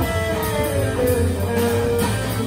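Live instrumental music from a guitar quartet: electric guitars holding and sliding between sustained notes over a steady double bass line.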